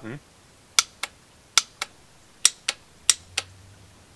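Yamaha F90 power tilt-and-trim relay solenoids clicking as the trim button is pushed: four pairs of sharp, very loud clicks, with no sound of the trim motor running. The clicks show that the fuse is good and the solenoids are switching, while the tilt/trim motor itself fails to run.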